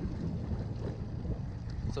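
Outboard motor of a small skiff running steadily at low trolling speed, a continuous low rumble, with wind buffeting the microphone.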